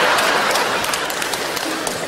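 Audience applause mixed with laughter, slowly dying away.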